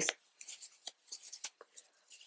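Faint rustling and light scratching of yarn and crochet work being handled by hand, with a few small ticks.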